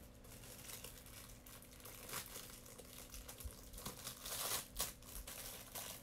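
Quiet crinkling and rustling of something like plastic wrapping being handled, in a few irregular bursts, the loudest about four and a half seconds in.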